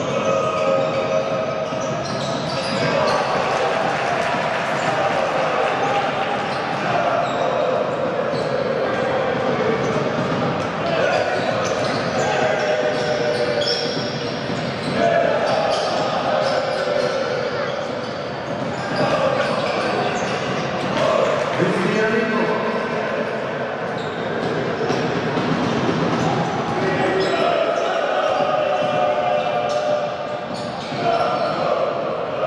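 Live basketball game sound in an arena: a basketball dribbling on the hardwood court amid players' and spectators' shouting voices, all echoing in a large hall.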